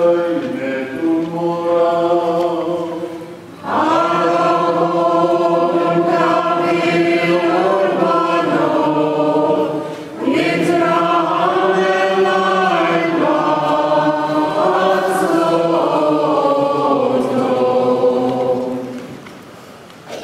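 Maronite liturgical chant sung by a group of voices in three long, sustained phrases. Each phrase fades before the next begins, about four and ten seconds in, and the singing dies away near the end.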